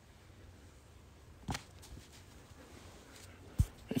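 Quiet room with two soft knocks: a light one about one and a half seconds in and a heavier, deeper thump near the end as a sisal-rope cactus cat scratching post is stood back upright on its padded base on carpet.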